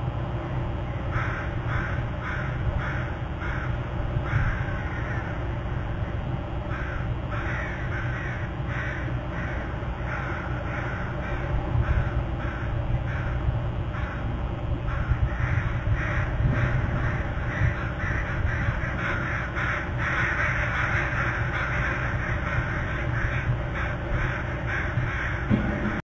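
A bird calling over and over in a long series of short, harsh notes, about two or three a second, busiest near the end, over a steady low rumble.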